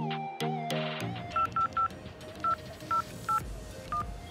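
Mobile phone keypad tones as a number is dialled: seven short beeps at uneven intervals. Background music plays in the first second.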